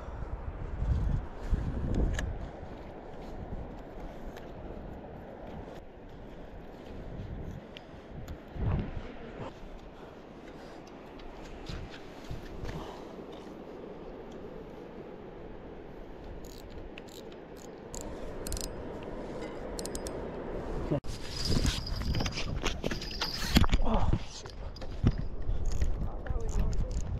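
A small bell on a fishing rod rings repeatedly in a high jingle from about five seconds before the end, signalling a fish biting at the line. Before that there is a steady outdoor background with scattered clicks.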